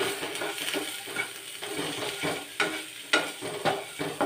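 Chopped vegetables frying in oil in a non-stick wok, sizzling as a spatula stirs and turns them. Several sharp scrapes and taps of the spatula against the pan come in the second half.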